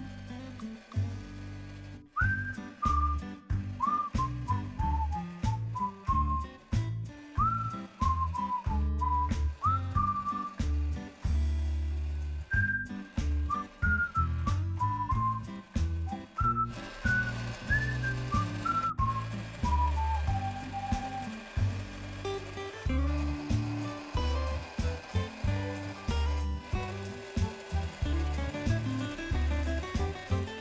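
Background music: a pulsing, rhythmic bass line under a whistled melody of sliding notes. The whistled melody stops about two-thirds of the way through, leaving the bass pattern.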